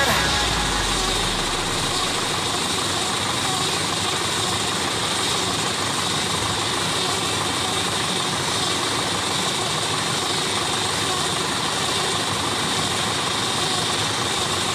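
Steady running of a tractor driving a round-bale wrapper as it turns and wraps a silage bale in film.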